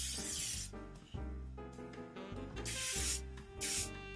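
Hairspray spraying onto hair: one long hiss that stops just under a second in, then two short sprays near the end, over background music.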